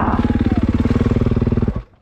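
Dirt bike engine running with a steady pulsing beat after the bike has crashed into a tree, then cutting out suddenly near the end.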